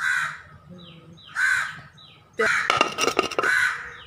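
Crows cawing: a harsh caw at the start, another about a second and a half in, then a longer run of overlapping caws near the end. Short falling chirps of a smaller bird come in between.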